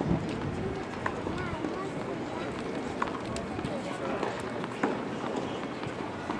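Murmur of people talking, with three sharp knocks of tennis balls being struck or bounced, about two seconds apart.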